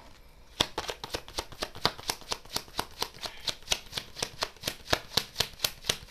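A deck of oracle cards being shuffled by hand: a quick, even run of short card snaps, about four or five a second, starting about half a second in.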